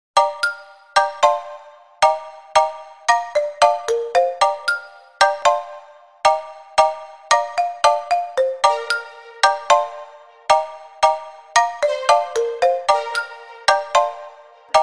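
Intro of a reggaeton instrumental beat at 113 bpm in D major. A melody of short struck notes that ring and fade repeats about every two seconds, with no drums or bass under it.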